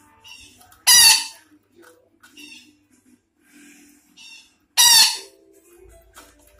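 Sumatran betet parakeet calling: two loud, harsh screeches, one about a second in and one near the end, with softer chattering calls between them.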